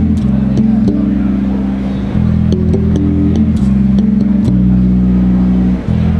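Spector electric bass guitar played through an amplifier: slow, sustained low notes that change about every second, with light string and fret clicks at the attacks.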